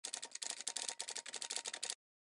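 Rapid typing clatter of keys, about a dozen sharp clicks a second, cutting off suddenly near the end.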